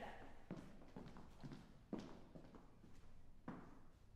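A quiet hall with a few faint knocks of footsteps on the wooden stage floor, roughly one every second and a half.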